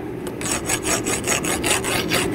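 A coarse hand rasp scraped hard, in rapid repeated strokes, along the side of a forged copper-and-nickel billet clamped in a steel vise. It is testing whether the fused layers will come apart.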